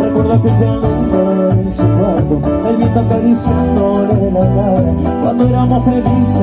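Live band playing Latin music: keyboard and electric guitar over a moving bass line and a steady beat.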